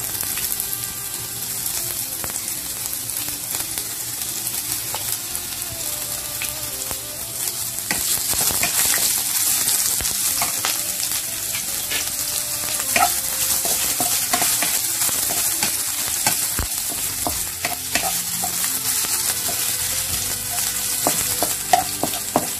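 Julienned ginger and browned garlic sizzling in hot oil in a nonstick pan, with a spatula scraping and tapping against the pan as it is stirred. The sizzle gets louder about eight seconds in.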